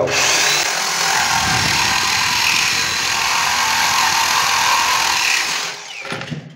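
Electric drill spinning a wet diamond core bit through a granite countertop: a steady grinding whine of stone being cut that cuts off near the end as the drill stops.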